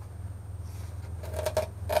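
Plastic sheeting crinkling and rustling as it is handled and peeled off a hardened fiberglass door pod, with a few short crackles in the second half. A steady low hum runs underneath.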